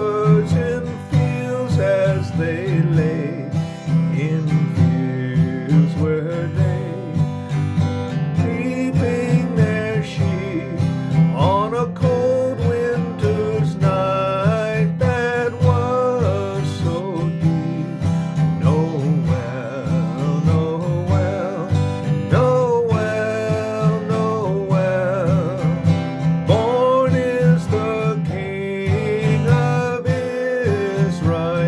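A man singing a slow Christmas carol, accompanying himself on a strummed acoustic guitar.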